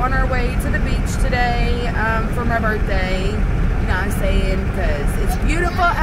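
A woman's voice over the steady low rumble of a car, heard inside the cabin.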